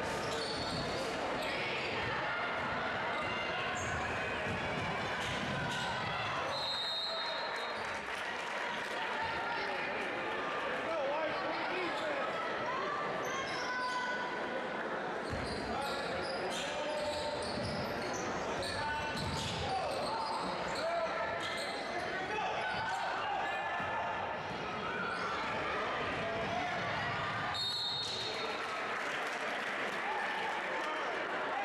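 Gymnasium sound of a basketball game in progress: echoing crowd chatter and players' voices, with a basketball being dribbled on the hardwood. Two brief high-pitched tones cut through, about seven seconds in and again near the end.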